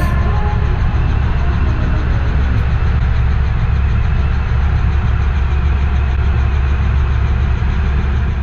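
A light helicopter in flight, heard from inside the cabin: a steady low rumble of engine and rotor.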